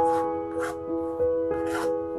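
Background piano music, with three short raspy strokes of a steel palette knife spreading thick acrylic paint across the canvas.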